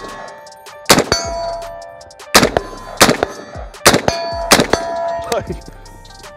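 Five shots from a Springfield Saint Victor .308 AR-10 rifle fitted with a large muzzle brake, unevenly spaced half a second to a second and a half apart. Several shots are followed by the ringing clang of a hit steel target.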